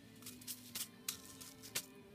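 Quiet background music with long held notes, and a few short crinkles and clicks as a plastic bag holding bead packets is handled.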